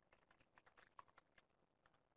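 Faint computer keyboard typing: a quick run of keystrokes that thins out after about a second and a half.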